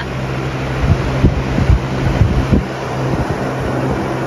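Steady low hum of an electric box fan running, with a few low thumps on the microphone between about one and two and a half seconds in.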